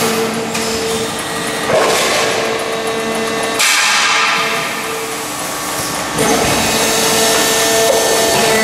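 A 400-ton hydraulic press with a progressive die stamping exhaust-muffler caps from coil steel: three sharp strokes about two seconds apart, each trailing off in a hiss. Under them runs a steady hum that cuts out for a moment in the middle.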